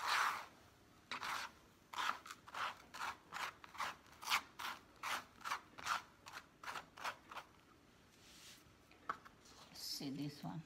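A hand scraping and sweeping loose potting mix with perlite across a plastic tray: a quick run of short gritty scraping strokes, about three a second, stopping about three-quarters of the way through.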